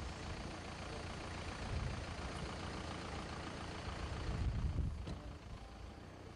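Street traffic: the low engine rumble of passing motor vehicles, swelling louder about two seconds in and again near five seconds as vehicles go by.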